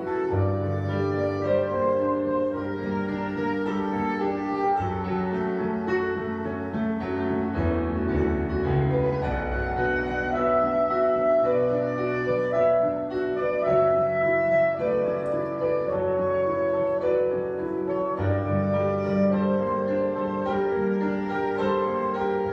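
Instrumental passage of a slow song played live on piano and saxophone: sustained melodic saxophone lines over piano chords and bass notes.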